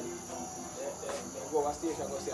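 Steady high-pitched trilling of night insects such as crickets, with faint voices talking in the background.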